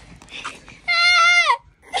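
A dog whining: one long high-pitched whine about a second in, held steady and then dropping in pitch at the end.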